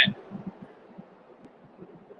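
A man's spoken word ending, then a pause with faint hiss and a few soft low thuds.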